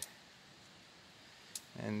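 Near silence between bits of speech: a faint steady hiss of the night campsite, with one short click about one and a half seconds in.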